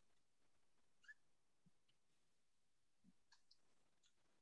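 Near silence: faint room tone over the call line, with a few soft small clicks about a second in and again after about three seconds.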